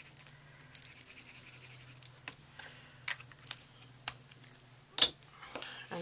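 Quiet scratching and light clicks as a Stampin' Up! Multipurpose Liquid Glue bottle's tip is dabbed and rubbed on cardstock, with a sharper knock about five seconds in. A faint steady hum runs underneath.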